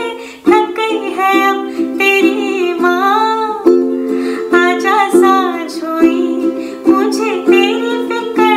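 A woman singing held, sliding notes over her own strummed ukulele chords. The strumming breaks off for a moment about half a second in, then carries on.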